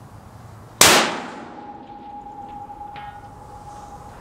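A single .308 rifle shot from a Ruger Precision Rifle, about a second in, sharp and loud with a decaying echo, followed by a thin steady ringing tone that carries on to the end.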